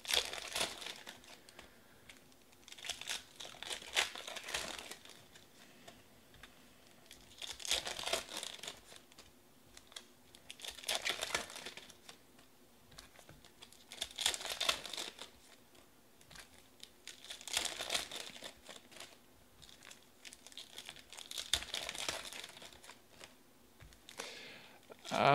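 Foil trading-card pack wrappers crinkling and tearing as packs are ripped open one after another. The bursts come about every three to four seconds, seven of them.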